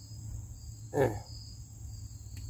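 Insects trilling steadily at a high pitch, with a second high trill coming and going. About a second in, a short voice sound, such as a chuckle, cuts through.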